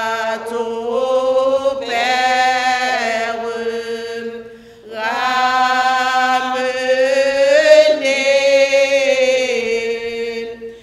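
A woman singing a hymn unaccompanied, holding long, wavering notes in two phrases, with a brief breath between them about four and a half seconds in.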